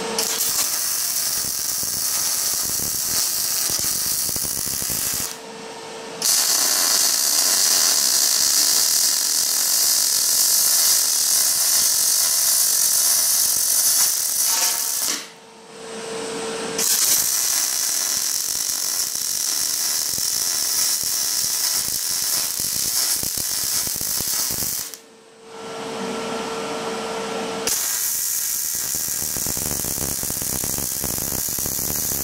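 MIG welding arc crackling on steel in four long runs, with three short pauses between beads, about five, fifteen and twenty-five seconds in, where a steady hum is heard.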